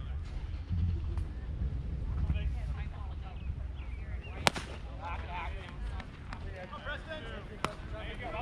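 A single sharp crack at home plate about four and a half seconds in as a pitched baseball arrives, with a second, softer crack near the end. Spectators chat and wind rumbles on the microphone throughout.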